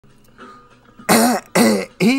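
A man's voice letting out two short, loud vocal bursts, one right after the other, about a second in.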